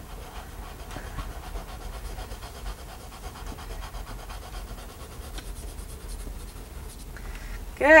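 Chalk pastel rubbed in repeated strokes on drawing paper on an easel, a soft dry scratching over a low steady hum.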